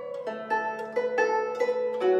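Guzheng played with fingerpicks: a quick melodic run of plucked notes, each ringing on under the next over a lower note that sustains.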